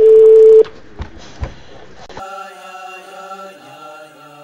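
A loud, steady electronic beep about half a second long, followed by a few light knocks, then music with sustained chant-like voices holding long chords that begins a little over two seconds in.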